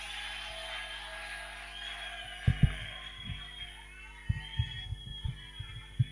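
Soft electric keyboard playing held, sustained notes that change a few times. About ten irregular low thumps come in over the second half and are the loudest sounds.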